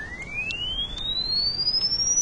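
A pure sine-wave tone from a software signal generator's frequency sweep, rising steadily and smoothly in pitch from a mid whistle to a high one.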